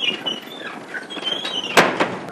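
A wooden door squeaking on its hinges as it swings, then shut with a bang near the end.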